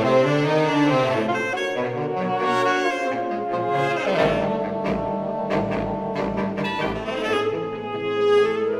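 Saxophone ensemble playing sustained, layered chords, with deep bass notes entering about four seconds in.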